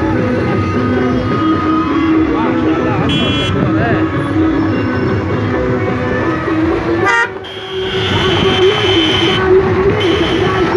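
Car horns honking from a slow-moving convoy of cars, with long held notes, over car noise and voices.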